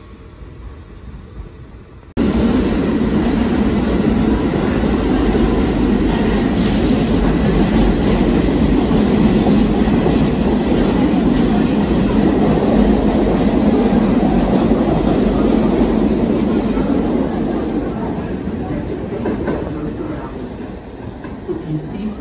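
A New York City subway train running alongside the platform close by: a loud, steady rumble and clatter of wheels on the rails. It starts suddenly about two seconds in and fades as the train pulls away near the end.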